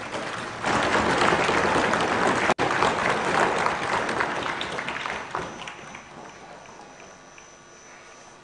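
Applause from a legislative chamber full of members, swelling up about half a second in, holding for several seconds with a brief break, then dying away over the last couple of seconds.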